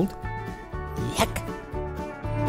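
Background music in a pause of the voice-over: held notes over a bass that pulses on and off, with a brief sliding streak of sound about a second in.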